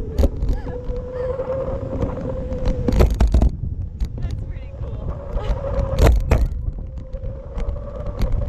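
Wind buffeting the microphone of a camera mounted on a parasail tow bar in flight: a low rumble with sharper gusts about three and six seconds in, over a steady hum.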